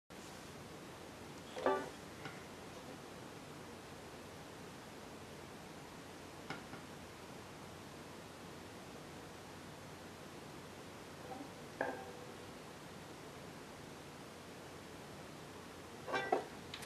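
Steady low hiss with a few brief knocks and handling noises, the loudest about two seconds in and others around six and twelve seconds in.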